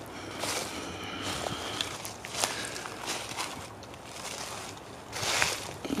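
Footsteps crunching through dry leaf litter, a run of uneven steps with louder crunches about five seconds in.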